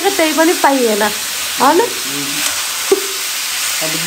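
Steady sizzle of food frying in a pan, with a man's voice talking over it now and then.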